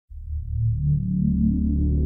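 Background music: a low electronic synthesizer drone with slow held tones above it, cutting in abruptly right at the start.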